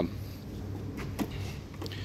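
A few faint, short clicks as the door handle of a Mercedes-Benz W116 saloon is tried and found locked, over a steady low background hum.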